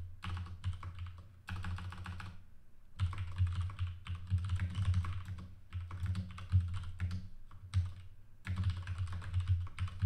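Computer keyboard typing in quick runs of keystrokes, broken by short pauses.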